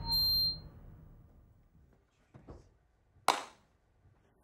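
The trailer score ends on a brief high ping and fades away. Near silence follows, broken by a couple of faint sounds and then one sharp snap a little over three seconds in.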